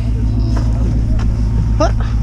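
Snowcat engine running with a steady, loud low drone, heard from aboard the machine. A short voiced exclamation comes near the end.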